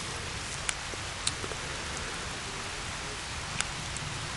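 Rain falling, a steady even hiss, with a few sharp ticks of drops landing close by.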